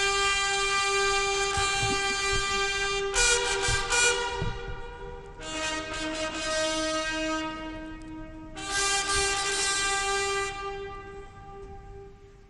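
A ceremonial band of wind instruments, likely brass, playing four long held chords of a few seconds each over one steady sustained note.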